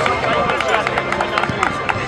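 A group of people talking and calling out over one another, with scattered sharp claps and music playing underneath.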